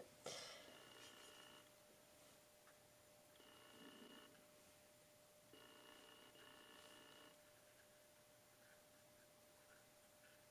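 Near silence: room tone with a faint steady hum. Three faint pitched tones come and go, each lasting about one to two seconds.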